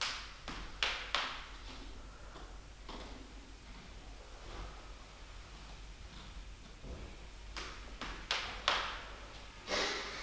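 A man's sharp breaths through nose and mouth from the effort of a weighted split squat: a few short exhales just after the start, then quiet, then another cluster of three or four near the end as he comes back up.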